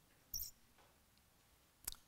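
Faint handling sounds at a wooden lectern as a Bible's pages are handled: a brief rustle about a third of a second in and a sharp click near the end, over a quiet room.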